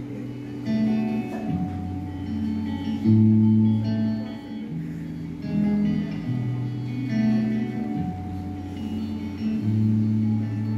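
A live band plays an instrumental passage with no vocals: guitar chords over held low notes that change pitch every second or so.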